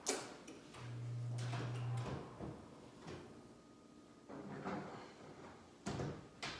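Kitchen oven door clicking open and shut as a baking pan is put in, with a short steady low hum about a second in.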